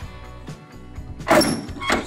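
Aluminium cargo-box rear door's lock bar and latch being worked by hand: one loud metal clunk about a second and a half in, with a smaller knock just after, over background music.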